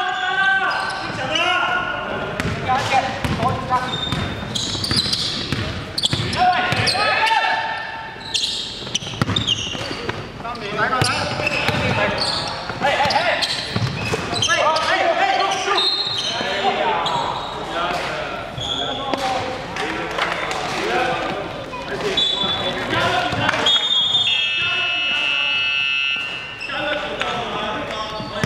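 Indoor basketball game in a large, echoing gym: players' voices calling out over a basketball bouncing on the wooden court, with short sharp high squeaks. A longer shrill high tone sounds a few seconds before the end.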